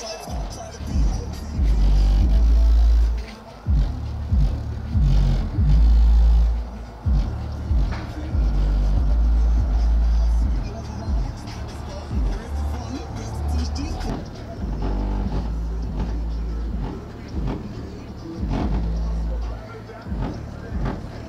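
A rap track played loud through a pickup truck's 12-inch car-audio subwoofers, with long, deep bass notes that each hold for a second or two and stand out above the rest of the music.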